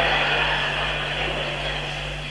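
Steady low hum and hiss of the recording's background noise in a pause between speech, growing slowly quieter.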